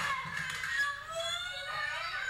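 Young children crying out in high, wavering voices during a toddler fight over a toy.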